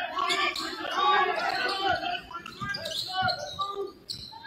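A basketball bouncing several times on a hardwood gym floor as it is dribbled, among the voices of players and spectators in a large, echoing gym.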